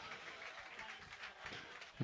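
Faint, even background noise of a stadium crowd during a stoppage in play.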